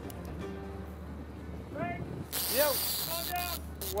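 Steady low drone of a boat's engine under faint background music, with short calls from the people aboard and a burst of hiss in the second half.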